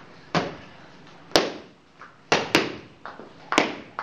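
Boxing gloves smacking against focus mitts in pad work: a series of sharp, irregularly spaced slaps, the loudest about a second and a half in.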